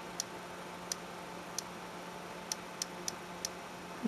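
Seven irregular typing clicks from an iPod touch's on-screen keyboard, one per letter as a word is typed, over a faint steady hum.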